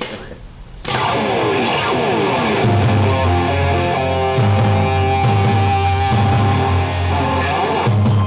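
Loud distorted electric guitar playing a fast heavy-metal line through a Marshall amp stack, starting about a second in. A backing track's bass line comes in underneath about three seconds in.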